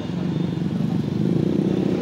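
Road traffic: a motor vehicle's engine running as it passes close by on the street, a steady low rumble that swells slightly in the first half second.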